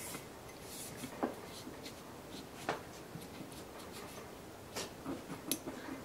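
Faint scratchy rubbing of a cleaning cloth on a thin stick being worked along the slots of a steel pistol slide (H&K P30L), with a few light clicks from handling the slide.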